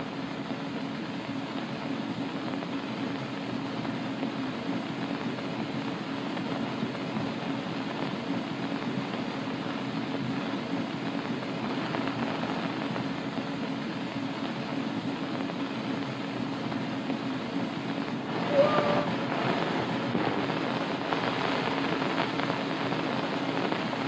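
Steady hiss with a low hum from an old optical film soundtrack, with a brief louder scrape or rustle about three-quarters of the way through.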